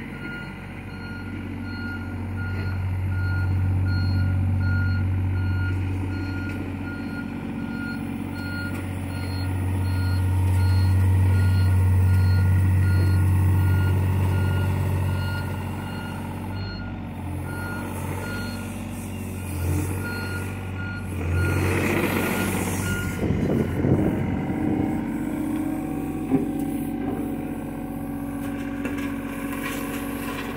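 John Deere 35G compact excavator's diesel engine running under varying load, rising and falling, while its travel alarm beeps about once a second as the machine tracks back and forth grading soil. The beeping stops a little after two-thirds of the way through, and a brief loud burst of noise follows before the engine settles into a steadier note.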